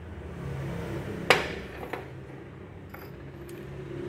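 Glazed porcelain dishware knocking together: one sharp clink about a second in with a brief ring, then a few faint taps as the pieces are handled.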